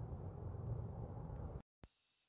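Faint outdoor background noise, mostly a low rumble, that cuts off abruptly into dead silence near the end at a video edit.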